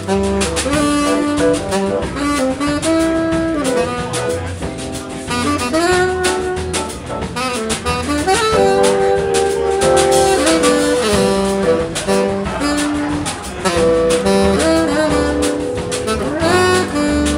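Live jazz quartet playing a samba-feel instrumental: tenor saxophone carrying a sliding melody over electric keyboard, upright bass and drums.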